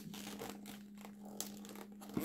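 Faint rustling and rubbing of a latex modelling-balloon figure shifting in the hands, over a steady low hum.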